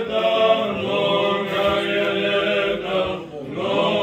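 Male voices chanting a hymn in sustained, held notes, with a short break in the singing about three seconds in.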